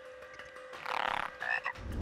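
A cartoon frog-squirrel croaking: one rattling croak about a second in, followed by a couple of short chirps.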